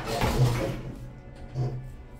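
Two-speed sliding elevator doors shutting with a clatter and thud about half a second in. The background music is muffled once they close, and a second short thump comes near the end.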